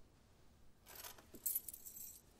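A bunch of metal keys jangling as they are handled, starting about a second in, with a louder jingle in the middle.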